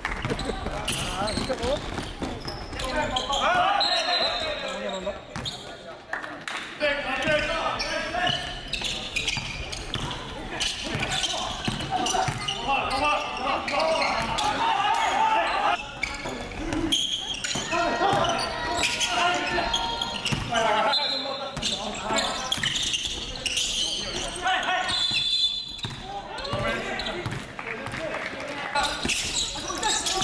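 Game sound from a basketball court: a basketball being dribbled on the hardwood floor, with players' shouts and calls, in a large echoing gymnasium.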